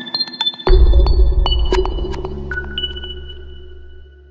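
hromadske.tv's electronic logo ident: quick high pinging tones over sharp clicks, then a deep bass hit about 0.7 s in that slowly fades under a few lingering high tones.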